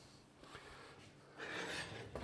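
Terracotta pot being slid across the cast-iron hob of a wood-burning cook stove: a soft scrape that starts about one and a half seconds in, after a quiet stretch.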